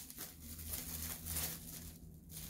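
Plastic bubble wrap rustling and crinkling faintly as it is unwrapped by hand.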